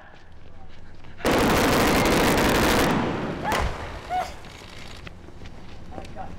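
Staged pyrotechnic explosion on a film set: a loud blast starts about a second in, holds for nearly two seconds and then dies away, followed by a sharp crack and a few short shouts.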